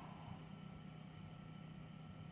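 Faint room tone: a steady low electrical hum under light background hiss.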